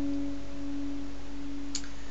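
Capoed acoustic guitar left ringing after a pluck, the sound dying away slowly until one middle note is held almost alone. A faint click comes near the end.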